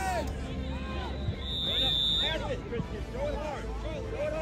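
Several voices of players and spectators talking and calling out across the field, overlapping. A single steady, high whistle note sounds once for about a second, a little before the middle.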